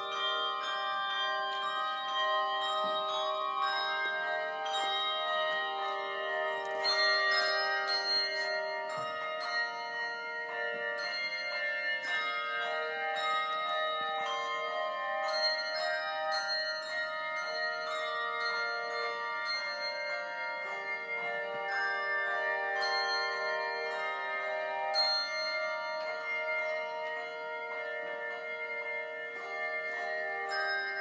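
Handbell choir playing a slow piece, several bells ringing together and sustaining, over a lower line of held notes that changes every second or two.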